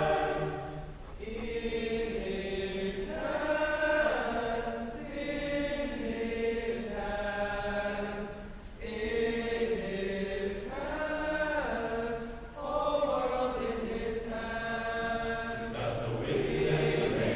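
A large choir singing long held chords in phrases, with brief breaks about every four seconds.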